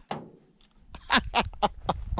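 A person laughing in short pulses, about four in a second, starting about a second in, over a low rumble.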